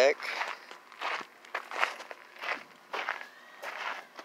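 Footsteps on gravel, a series of paces at a walking rhythm.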